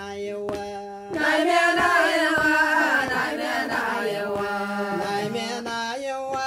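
Ethiopian Jewish (Beta Israel) liturgical chant: a held sung note, then about a second in a group of voices comes in louder with a wavering melody, over regularly spaced percussive strokes.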